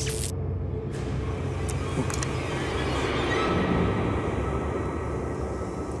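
Low, steady ominous rumbling drone of a suspense music underscore, with a hissing swell that builds to a peak about four seconds in and eases off, and a few faint clicks in the first couple of seconds.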